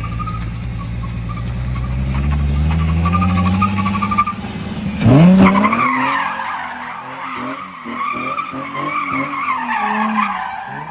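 Nissan 350Z's 3.5-litre V6 revving up steadily for about four seconds, then a sharp loud rev about five seconds in as the rear tyres break loose. After that come wavering tyre squeal and engine revs rising and falling as the car drifts around in circles doing donuts.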